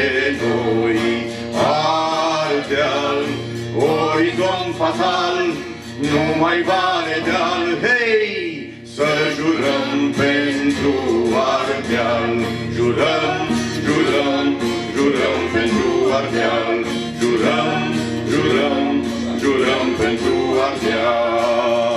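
Singing with two strummed acoustic guitars, a live folk-style song that is briefly softer about nine seconds in.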